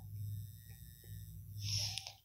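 Low steady electrical hum with a few faint taps, likely a stylus on a tablet screen as ink is drawn on the slide. A soft intake of breath comes near the end.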